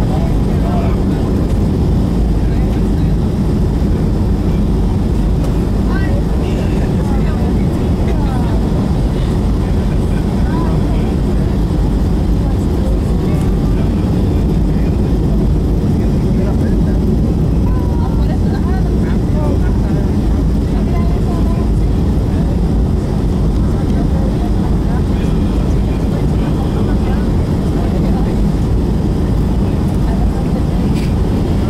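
Steady low roar of a Boeing 757-200's engines and rushing air, heard from inside the passenger cabin during the descent to land.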